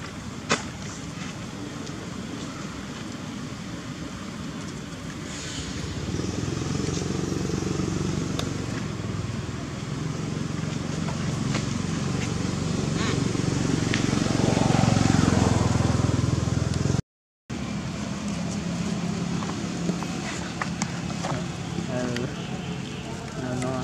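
A motor engine running steadily, swelling louder toward the middle and cutting out for a moment before it carries on. A single sharp click about half a second in.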